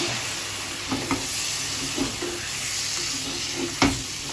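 Curry sizzling in a nonstick kadai while a spatula stirs it, with a few knocks of the spatula against the pan, the sharpest one just before the end.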